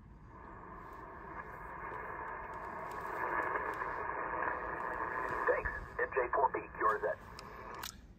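Yaesu FT-890 HF transceiver's speaker giving out 80-metre band noise on lower sideband: a narrow-band hiss that grows louder over the first few seconds. Near the end, a single-sideband voice from a station on the frequency comes through the noise.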